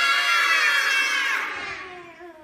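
A group of children shouting together in many high voices at once, loud for about a second and a half and then trailing off.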